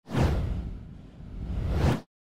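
Whoosh transition sound effect: a swell of noise that fades away in the middle, swells up again and cuts off suddenly at the end.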